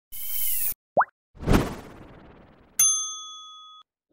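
Animated logo sound effects: a short whoosh, a quick rising plop about a second in, a swoosh with a low thud, then a bell-like ding near the end that rings out for about a second.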